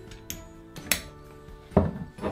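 Background music playing, with three short clinks and knocks of a glass bottle and metal bar tools set down on a bar top, the loudest near the end.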